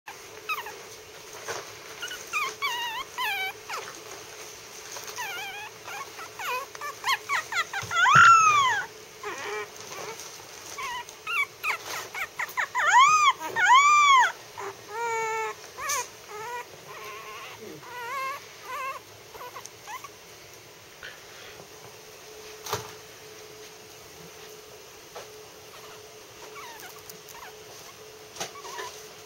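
Three-week-old Maltese puppy howling and whimpering: high squeaky calls that arch up and down in pitch, loudest about eight seconds in and again in several howls around thirteen to fourteen seconds, then trailing off into faint whimpers. A faint steady hum lies underneath.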